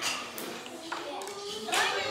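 Children's voices in a classroom, broken by a few sharp knocks and clacks.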